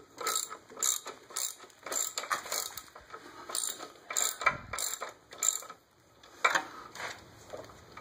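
Ratchet wrench clicking in short even strokes, about three a second, as a bolt is run in to press a Ford Model A flywheel off its pins. The clicking pauses briefly twice.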